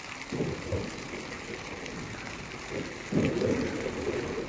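Shallow mountain stream running over rocks, a steady rushing noise, with two louder low rumbles, one about half a second in and a longer one near the end.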